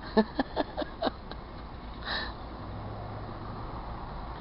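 Low steady rumble of vehicle engines from a front-end loader plowing snow and a pickup truck driving by, with a steady low hum in the last second as the pickup draws near. A few short clicks sound in the first second.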